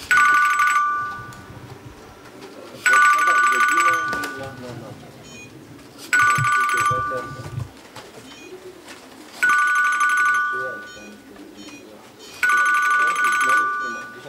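Electronic pigeon-race clocking system beeping as arriving racing pigeons pass through the loft-entrance antenna and are registered: five two-tone electronic beeps, each about a second long, coming roughly every three seconds.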